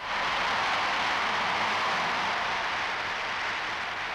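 Large stadium crowd cheering a goal: a steady wash of many voices that starts abruptly and eases slightly toward the end.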